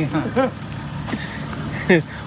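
Steady noise of a road vehicle running nearby, with brief bits of talk at the start and near the end.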